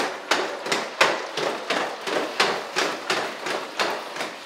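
A quick, even series of sharp knocks, about three a second.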